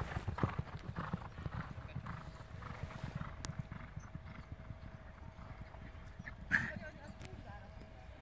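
Hoofbeats of two galloping racehorses on a sandy track, growing fainter as they gallop away. A brief louder sound breaks in about six and a half seconds in.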